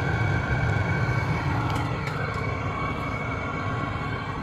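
Chinese 5 kW diesel air heater running after a restart, combusting properly with no smoke. It makes a steady low rumble with a faint steady whine above it.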